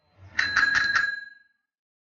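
Bicycle bell rung in a quick series of about four rings, ringing out and then fading.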